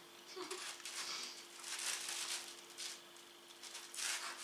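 Mouth sounds of chewing pizza, with the handling of a cardboard pizza box as a slice is pulled away, in a few short rustling bursts over a faint steady hum.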